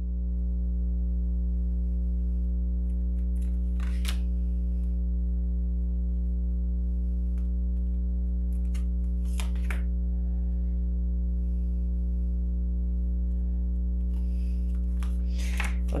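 A steady low drone hums throughout at an even level, with three or four soft clicks of oracle cards being shuffled and handled.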